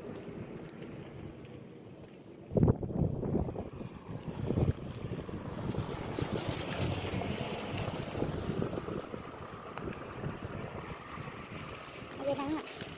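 Wind buffeting the microphone while walking outdoors: a low, uneven rumble in gusts, with a strong gust about two and a half seconds in.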